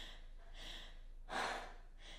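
A woman breathing heavily, two breaths, the second, louder one about a second and a half in.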